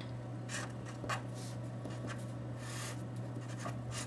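Pen writing on paper: a series of short, scratchy strokes as an arrow and a small x-y table are drawn.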